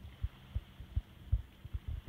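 Irregular low, muffled thumps on a phone's microphone, about eight to ten of them in two seconds, with no other sound standing out.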